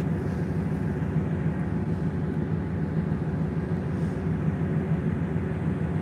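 Steady low rumble inside a passenger train carriage as the train moves slowly out along the platform.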